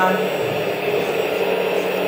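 Huina K970 RC hydraulic excavator running with a steady mechanical hum from its hydraulic pump and sound unit while the demolition plier attachment is worked.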